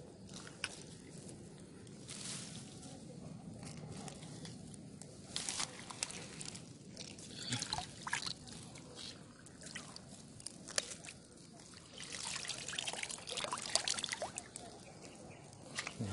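Water trickling, sloshing and dripping, with rustling of dry grass and stems, as a green mesh frog trap is worked loose from a shallow ditch and lifted out. The noises come in irregular spells, busiest in the second half.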